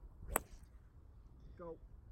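Golf club striking a ball off the tee on a full swing: one sharp crack about a third of a second in.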